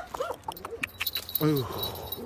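Dry fallen leaves crunching and rustling underfoot as a person steps and crouches over them, many small crackles and clicks. A brief low voice sound that falls in pitch comes about one and a half seconds in.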